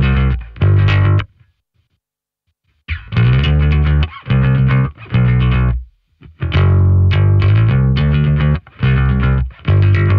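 Soloed electric bass guitar, an American Standard Precision Bass played with a pick, running through a bass riff of short, separated notes with a gritty, mid-rangey tone. The riff stops for about a second and a half early on, then carries on.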